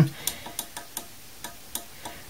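Small push button on the back of a computer power supply clicking as it is pressed repeatedly, a run of light clicks about four a second. No fan starts: the supply will not switch on.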